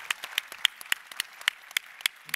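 Audience applause: many hands clapping in a dense, irregular stream of sharp claps.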